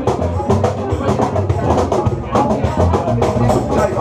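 Live acoustic band playing a Latin groove: acoustic guitar, violin and upright double bass over steady hand percussion, with a walking bass line and an even, driving beat.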